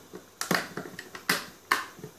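Several sharp plastic clicks from a switched wall socket being handled, its rocker switch pressed under a finger.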